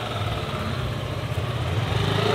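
A vehicle engine running steadily at low revs.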